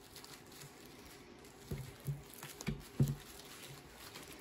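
Paintbrush dabbing paint onto bubble wrap: soft patting with a few light taps on the plastic, the loudest about three seconds in.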